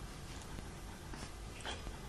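A dog making a few faint, short snuffles through its nose, the loudest about three-quarters of the way in.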